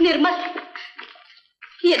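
A short low thump, then a burst of voices that fades over about a second and a half, with speech starting again near the end.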